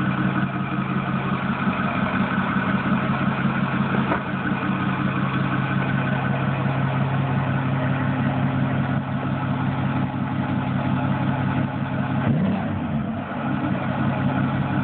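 Ford 6.4 L Power Stroke twin-turbo V8 diesel idling steadily through a large 8-inch exhaust tip.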